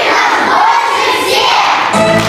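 Crowd shouting and cheering together in one loud collective cry, with many high children's voices.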